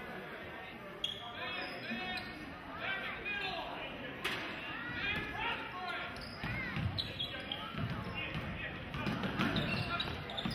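Basketball play on a hardwood gym floor: the ball bouncing and sneakers squeaking in many short chirps, with voices in a large, echoing hall.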